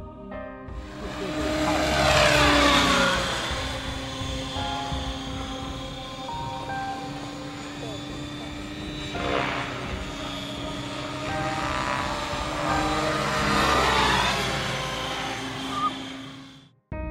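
Radio-controlled model helicopter flying, its rotor and motor whine sweeping down in pitch as it passes close by. It is loudest about two seconds in and again near the end.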